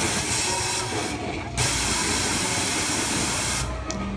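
Air jet hissing as part of an interactive wand-magic effect that blows the house banners into motion, in two blasts: a short one, a brief break just over a second in, then a longer one that cuts off suddenly near the end.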